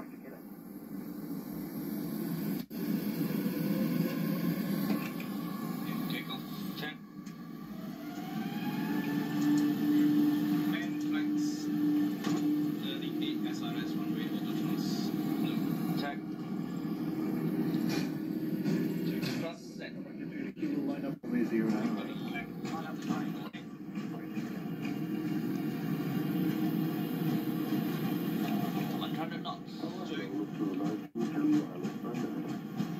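Airliner cockpit noise during a night takeoff, the jet engines spooling up with a rising whine about eight seconds in, heard as a muffled, narrow sound through a television's speaker with indistinct cockpit voices.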